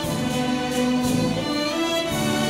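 Orchestra playing classical ball music in sustained chords that change a few times, accompanying the debutantes' opening formation dance.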